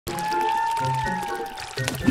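Cartoon soundtrack music with a long, slightly arching whistle-like note, then a short water splash near the end as the cartoon dolphin dives under.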